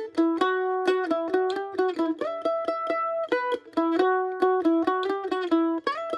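F-style mandolin playing a quick picked single-note lick, a small E minor pattern, against a ringing open high E string. The phrase repeats about every two seconds.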